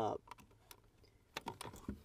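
A scatter of small, sharp plastic clicks and knocks, about seven, bunched in the second half, as RCA cable plugs are handled and pushed into their sockets.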